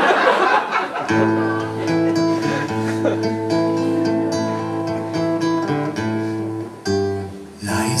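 Acoustic guitar playing a slow song intro: sustained chords ringing over a steady bass note, starting about a second in, with a short break near the end.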